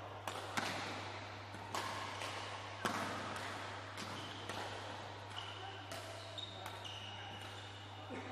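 Badminton rally: sharp racket hits on the shuttlecock roughly once a second, the loudest in the first three seconds, with short shoe squeaks on the court floor in the second half. A steady low hum runs underneath.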